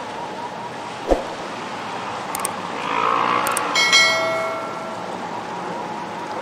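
Steady outdoor background noise of wind, river water and distant traffic. A short thump comes about a second in, then two faint clicks. Just before the four-second mark a bright ringing chime starts and fades over about a second.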